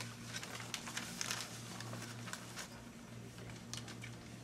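Quiet room with faint scattered rustles and small clicks, a few of them close together about a second in, over a steady low hum.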